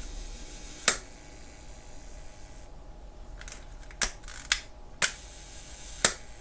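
Leica M2's cloth focal-plane shutter fired at its 1-second speed: sharp mechanical clicks, one about a second in, then a cluster near the end in which two clicks fall about a second apart as the shutter opens and closes, with a softer click between them. The slow speed runs about right, and the owner judges it fine.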